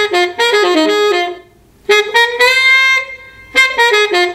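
Pre-recorded solo tenor saxophone playing a jazz lick, with the backing muted. A quick run of notes, a short pause, a long held note that bends slightly up, then another quick run starting near the end.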